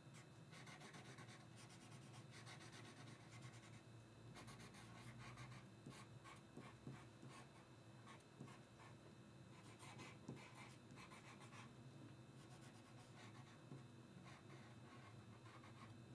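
Faint scratching of a hand-held drawing tool on paper, in short strokes that come and go, over a low steady hum.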